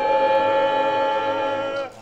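A small men's folk choir singing a cappella, holding one long chord that breaks off near the end.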